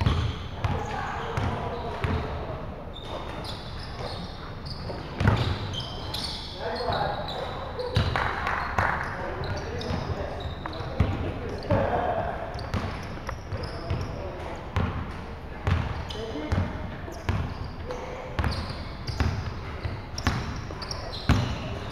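A basketball bouncing on a wooden court in a large sports hall, in irregular thumps, with players' voices calling out between them.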